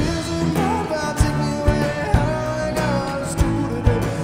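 A band playing a rock song: a man singing over strummed acoustic guitar and piano, with a drum kit keeping a steady beat of about two strokes a second.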